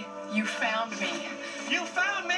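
Movie trailer soundtrack playing from a television's speaker: music under short bursts of voices.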